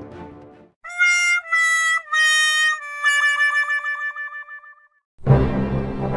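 'Sad trombone' comedy failure sound effect: four brass notes stepping down in pitch, the last one long and wavering. About five seconds in, dramatic music with a deep drum beat starts.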